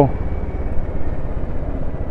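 Royal Enfield Bullet's single-cylinder engine running steadily at low speed while riding downhill, a low even rumble under wind and road noise.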